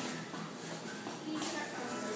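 Voices, faint music and shoes shuffling on a tile floor as a child dances, with a few short scuffs.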